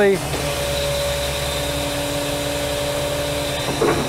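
Truck engine idling while its PTO-driven hydraulic pump whines steadily under load as the lowboy gooseneck's neck and shoring cylinder controls are worked. The whine starts just after the start and stops just before the end.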